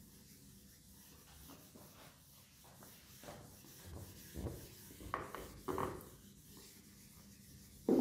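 Whiteboard duster wiping marker off a whiteboard in repeated rubbing strokes, a few of them louder in the second half, ending with a louder knock.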